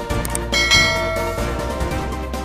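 Background music with a bright bell-like chime sound effect about half a second in, ringing for about a second, just after a couple of light clicks.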